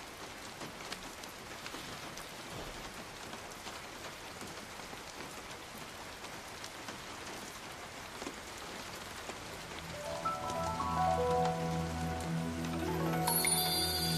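Steady rain falling, an even soft hiss. About ten seconds in, quiet background music comes in with held low notes and higher sustained tones over the rain.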